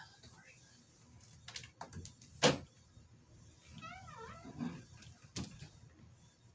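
A few sharp knocks and clicks, the loudest about two and a half seconds in and another near the end, with a short wavering call, voice-like or a cat's meow, about four seconds in.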